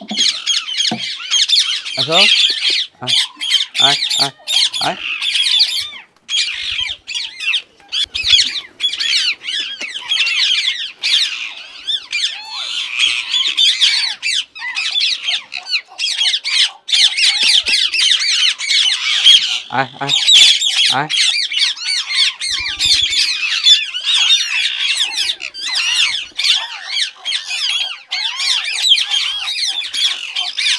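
A flock of Indian ringneck parakeets squawking and chattering nonstop, many shrill calls overlapping.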